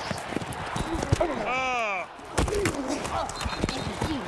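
Football pads and helmets colliding in a quick series of sharp hits during a sack, with one man's long yell that rises and falls about a second and a half in, over stadium crowd noise.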